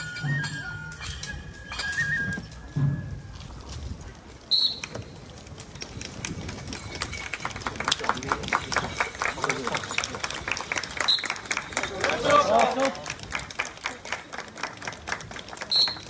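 Japanese festival flute and drum music for the tiger dance, which stops about three seconds in. Then comes crowd chatter and a run of rapid hand claps as the dance ends.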